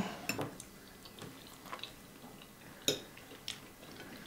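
Forks clinking lightly against dinner plates: a few sparse, short taps, with one sharper clink late on.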